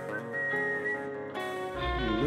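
A whistled melody, a high clear line with small bends in pitch, played live through the PA over sustained electric guitar notes. Bass and drums come in near the end.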